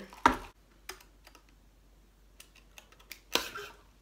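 A paper fast-food cup set down on a table with a thump, followed by a few faint clicks and a short rustle near the end.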